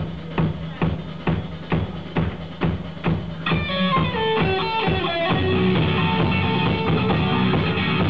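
Rock band playing live in a club: a steady drum beat of a little over two hits a second, then a descending run of notes about halfway through, after which the full band comes in louder with sustained guitar chords.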